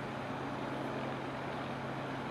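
Ship's engines running steadily: a low, even drone with a constant hum.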